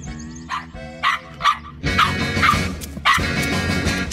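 A small cartoon dog barking in a series of short barks, which come thicker and louder in the second half, over background music.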